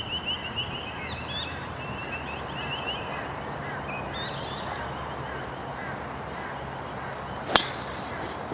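Birds chirping and calling over a steady outdoor background, then near the end a single sharp crack as a driver strikes a teed golf ball.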